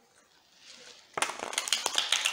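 Deck of tarot cards being riffle-shuffled: a quick, dense fluttering run of card-edge clicks that starts about a second in.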